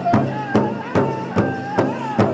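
Pow wow drum group playing a Men's Traditional song: several men singing together in high voices with long held notes over a large shared drum, struck in unison in a steady, even beat.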